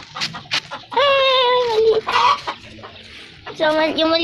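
Chickens calling: one long drawn-out call, sinking slightly in pitch, about a second in, a short call after it, and more calls starting near the end.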